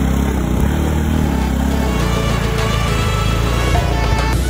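A vehicle engine running steadily as it drives along a road. Music with held notes comes in about halfway through and plays over it.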